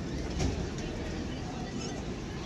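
Outdoor ambience: a steady low rumble and hiss, with a short knock about half a second in and a faint high chirp near the end.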